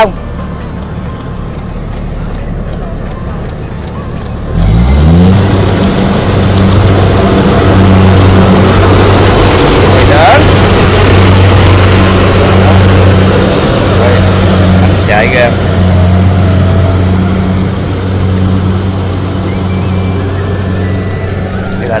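Kubota combine harvester's diesel engine running close by as the machine works through a muddy rice field. Its note rises sharply about four and a half seconds in, then holds as a loud, steady hum.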